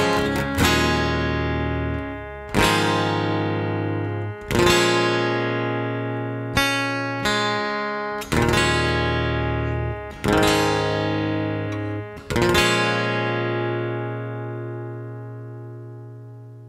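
Acoustic guitar playing slow strummed chords, each left to ring for one to two seconds, as the song closes; the last chord, struck about twelve seconds in, rings on and fades away.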